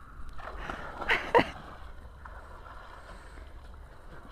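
Lake water splashing around a swimmer wading and dipping, with two short splashes a little over a second in.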